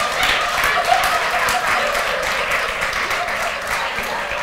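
Audience applauding, with many hand claps, mixed with laughter.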